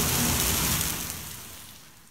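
Steady hiss of rain, fading out from about a second in until it is almost gone.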